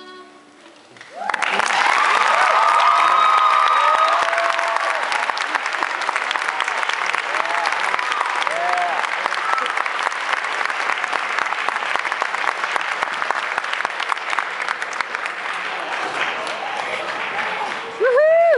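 Audience applauding, breaking out about a second in after the last note dies away and carrying on steadily, with cheering voices loudest in the first few seconds.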